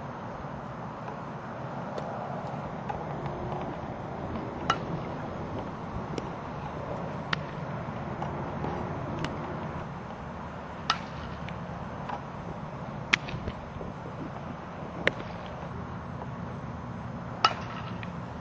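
Sharp cracks of softball impacts, about seven of them, roughly every two to three seconds, over a steady low outdoor rumble.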